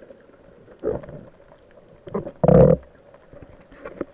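Muffled underwater water noise picked up by a camera in a waterproof housing: a low steady wash with two loud gurgling bursts of bubbles or sloshing, about one second in and, louder, about two and a half seconds in.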